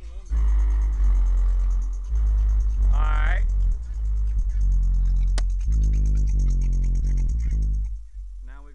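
A song played loud through a custom car audio system, with heavy bass from two DB Drive Platinum 15-inch subwoofers on an Audiobahn 3000-watt amp set halfway up. The music starts a moment in and cuts off sharply near the end.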